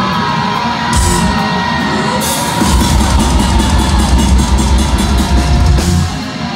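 Heavy metal band playing live, recorded from the crowd: distorted guitars, with the drums and bass filling in to a fast, steady beat a little under halfway through.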